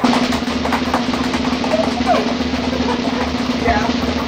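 A drum roll: rapid, continuous snare strikes over a steady held low tone, building up to an introduction.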